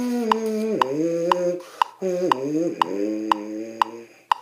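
Lips buzzing into a brass-instrument mouthpiece on its own: two phrases of held, buzzy pitches that slur downward, with a short break for breath between them. A metronome clicks steadily twice a second (120 beats a minute) underneath.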